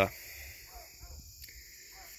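Steady high-pitched chirring of insects in the grass, a continuous chorus with a faint low rumble underneath.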